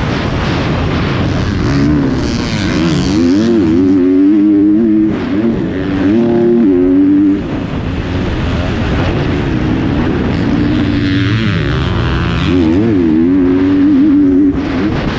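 2021 GasGas 250 motocross bike engine running hard under the rider, its revs rising and falling again and again through the corners and straights, with a couple of brief throttle cuts, over a steady rush of wind.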